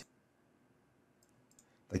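A few faint computer mouse clicks about a second and a half in, over near silence.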